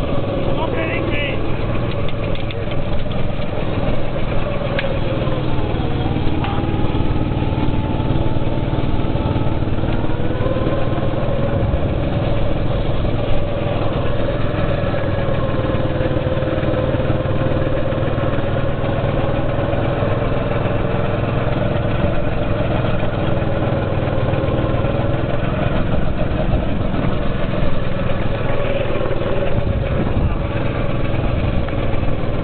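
Go-kart engine running hard, heard from the driver's seat, its pitch wavering as the kart slows for corners and speeds up again, with a clear dip about six seconds in that climbs back a few seconds later.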